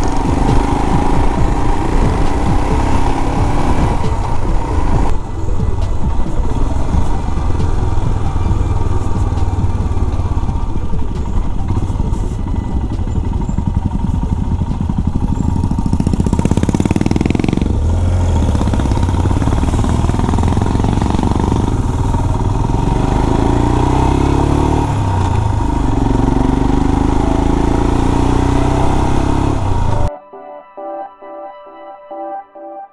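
Motorcycle engine running on the move, with wind rush and tyre noise on a wet road. About halfway through the bike eases off at a junction, then pulls away again.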